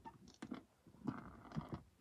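Faint clicks and a soft scraping rustle of a small plastic ball being handled and pressed into a plastic pegboard, with a few light taps about half a second in and a longer rustle about a second in.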